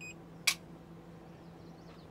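Touchscreen of a Bluetti AC200P power station giving a short high beep as a finger taps a menu button, then a sharp click about half a second in. A faint steady low hum runs underneath.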